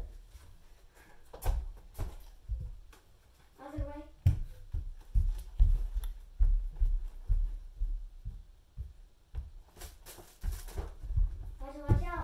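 Thumps of children running and stepping across a wooden floor and an inflatable gymnastics mat, a quick run of steps in the middle. A brief voice comes in about four seconds in.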